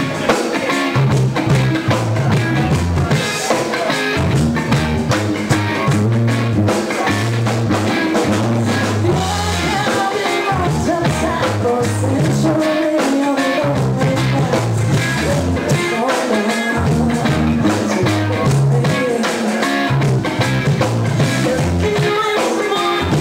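Live rock band playing a cover of a pop song: drum kit, bass guitar and electric guitar, with a voice singing, in a rough, poorly recorded live mix.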